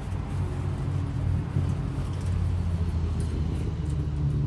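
A steady low engine drone with a deep hum, like a motor vehicle running nearby, holding level throughout. Light rustling of wrapping paper comes over it now and then.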